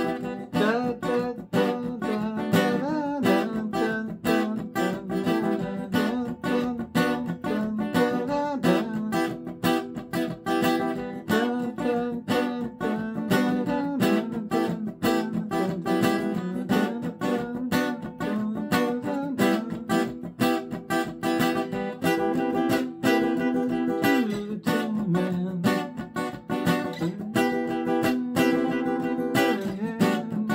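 Steel-string Seagull acoustic guitar strummed in a steady rhythm, playing chords continuously through a full song.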